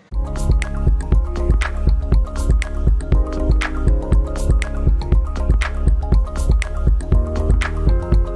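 News channel's closing ident music, starting abruptly: a steady beat over heavy bass and sustained pitched notes.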